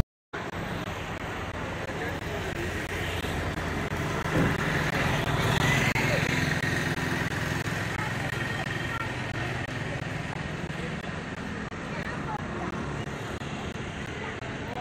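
Outdoor street ambience: steady road traffic noise mixed with the indistinct voices of people nearby, swelling slightly a few seconds in.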